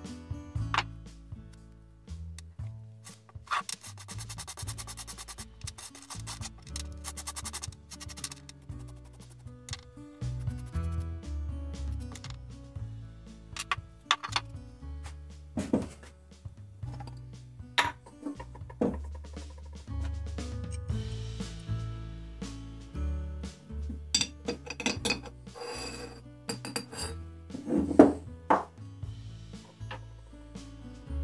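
Background music with a steady bass line, over hand scrubbing and rubbing of a rusty steel auger bit being cleaned after a vinegar soak, with a burst of rapid scraping strokes early and scattered knocks and clinks of tools handled on a wooden workbench, the loudest near the end.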